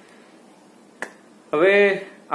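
Quiet room tone, broken by a single short, sharp click about a second in; a man's voice starts half a second later.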